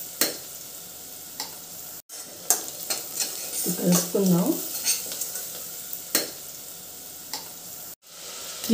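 Spices and chopped vegetables frying in oil in a stainless steel pressure cooker, sizzling steadily while a steel spoon stirs them, with scattered sharp clicks of the spoon against the pot.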